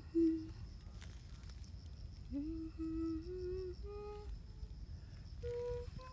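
A woman humming a slow tune without words: a few held notes, each pitched a little higher than the last, over a steady faint high insect trill.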